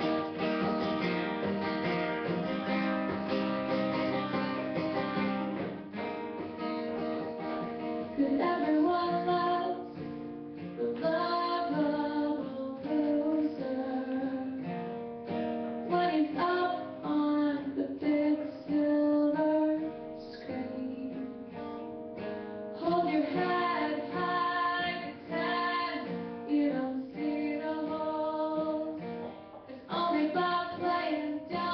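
Strummed acoustic guitar played live, alone for the first few seconds, then with a woman singing over it from about eight seconds in.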